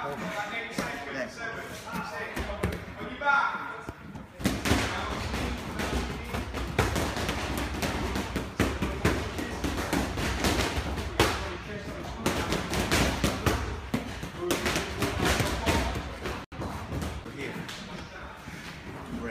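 Repeated thuds and knocks of bodies and feet on foam training mats during a grappling drill, mixed with muffled, indistinct voices. About four seconds in, the sound changes abruptly to a noisier, denser run of thuds.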